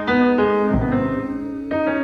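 Instrumental break in a slow blues song: piano playing a run of notes over low bass notes, with no singing.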